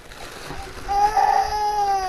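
A small child crying: one long drawn-out wail that starts about a second in and falls slowly in pitch.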